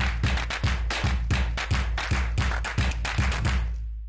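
Electronic transition sting: a steady deep bass hum under a fast, even beat of about four sharp hits a second, fading toward the end.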